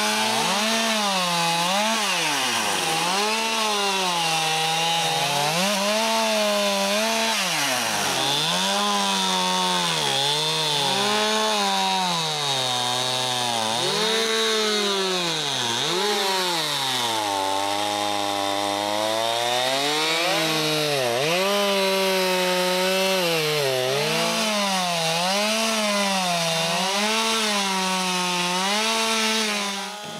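Two-stroke Stihl chainsaw ripping lengthwise along logs to square them into beams, running hard throughout. Its pitch dips and rises every second or two as the cut loads it.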